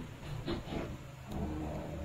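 Quiet room tone with a faint steady low hum in a brief pause between a man's spoken phrases.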